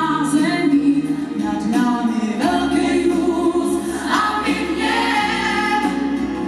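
A female solo singer on a microphone, with a choir of women's and girls' voices singing along in held notes.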